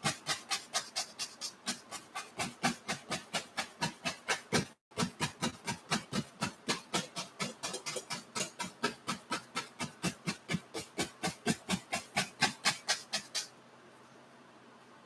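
A bristle brush tapping hard and fast against a stretched oil-painting canvas, about five taps a second in a steady rhythm. There is one brief break about a third of the way in, and the tapping stops shortly before the end.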